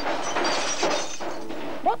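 A crash of glass shattering, a dense noisy smash with thin ringing glints that dies away near the end.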